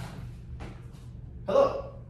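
A man gives one short voiced gasp about a second and a half in, over a low steady hum.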